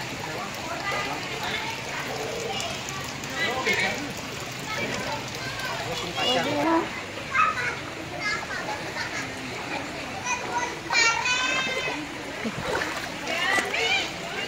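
Children's voices and calls with water splashing as people wade through thigh-deep floodwater, with one loud high-pitched shout about three-quarters of the way through.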